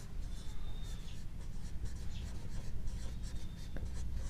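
Marker pen writing on a whiteboard: light scratchy strokes, with a thin high squeak of the tip twice.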